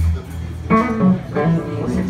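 A live rock band playing: picked electric guitar notes over a steady bass line, with a voice in among them.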